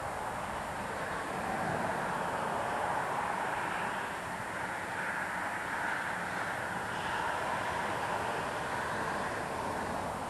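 An E-flite UMX Ultrix micro RC airplane's electric motor and propeller buzz steadily in flight, swelling and easing a little as it moves, mixed with wind.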